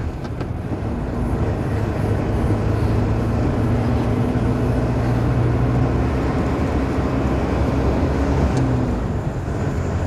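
Truck engine running steadily with road noise, heard from inside the cab at about 40 km/h; a low even drone that eases slightly near the end.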